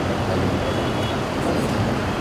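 Steady background noise with a low hum, no speech.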